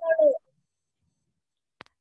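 A voice on a video call trails off in a short falling sound, then the line drops to dead silence, broken by a single click near the end.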